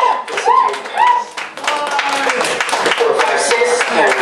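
Electronic noise-set sound: a pitched electronic tone warbling up and down about twice a second for the first second or so. It gives way to a dense run of sharp claps over the electronics.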